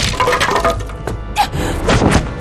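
Fight-scene sound effects of wood cracking and breaking, with several sharp hits, over dramatic background music.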